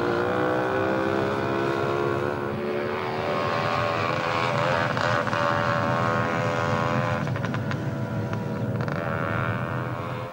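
Small two-stroke moped engine running steadily at high revs, its pitch dipping briefly about three seconds in and then holding.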